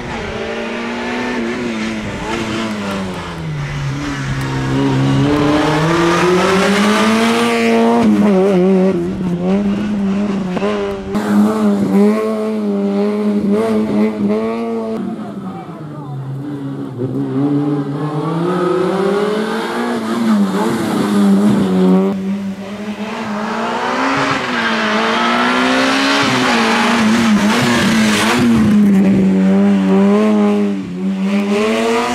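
Peugeot 106 rally car's engine revving up and down through a cone slalom, its pitch climbing and falling every few seconds as the driver accelerates and lifts.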